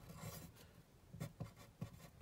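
A pen writing on paper: faint, short scratching strokes, several a second, as a word is written by hand.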